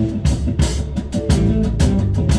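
Live rock band playing: a drum kit keeps a steady beat under amplified guitar, with a saxophone in the band.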